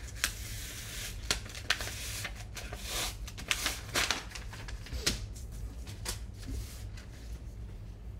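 Sheets of paper rustling and crackling as they are handled and shifted on a desk, with a run of sharp crinkles through the first five seconds or so that then thin out, over a low steady hum.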